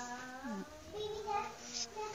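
A child's voice singing: a held note that slides down about half a second in, followed by more sung or babbled sounds.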